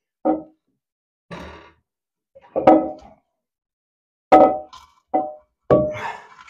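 Ceramic toilet cistern knocking against the pan as it is rocked and forced loose by hand, six short knocks, several with a brief ringing tone, the loudest late on. Its fixing wing nuts will not turn, so it is being wrenched off by brute force.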